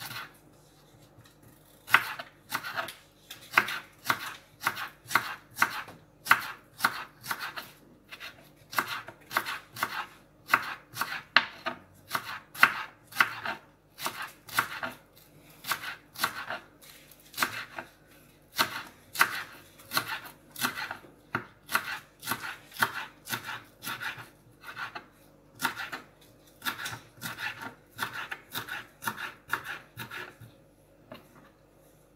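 A kitchen knife chopping green onion on a wooden cutting board: steady sharp knife strikes, about two a second, with a couple of brief pauses.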